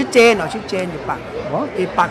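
Men talking, with a brief high-pitched, wavering vocal sound just after the start.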